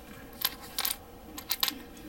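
Small hard plastic model-kit parts clicking and tapping together as they are handled and picked up off a cutting mat: a handful of light, sharp clicks in small clusters.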